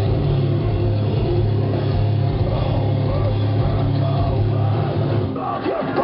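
A metal band playing live: distorted guitars, bass and drums, loud and bass-heavy. The heavy low end falls away shortly before the end.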